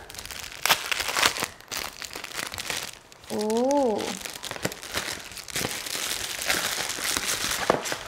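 Pantyhose packaging crinkling and rustling as the packet is handled and opened, in irregular crackles. Partway through comes a short hummed 'mm' from a woman's voice.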